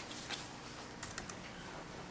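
Faint light clicks and taps of papers and a folder being handled at a desk: one near the start, then three quick clicks about a second in, over low room hiss.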